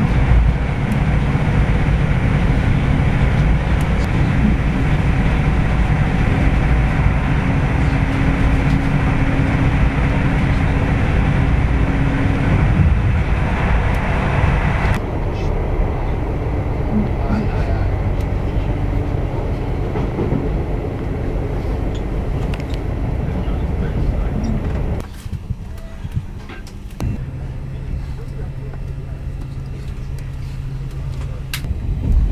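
Passenger train running at speed, heard from inside the coach: a loud, steady rumble of wheels and running gear. The sound changes abruptly a couple of times and is quieter over the last few seconds, with a steady low hum.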